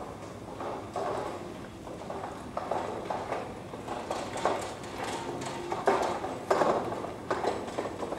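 An empty metal two-wheeled hand truck clattering and rattling as it is pulled over cobblestones, mixed with footsteps on the paving; a run of irregular knocks, a few a second.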